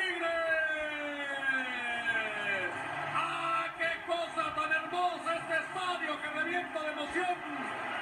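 Football TV broadcast audio heard off the set: a long falling tone over the first two to three seconds, then a man's voice talking.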